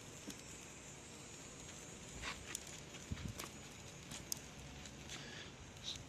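Small twig fire crackling: a handful of sharp pops and clicks scattered over a quiet steady background.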